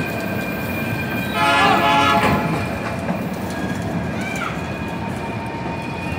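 Freight wagons rolling past close by, their wheels clattering on the rails, with a steady high-pitched squeal from the wheels. The sound swells briefly about one and a half seconds in.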